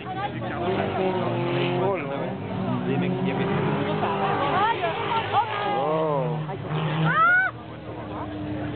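Autocross cars racing on a dirt track, their engines revving up and down, with several quick rises and falls in engine pitch in the second half.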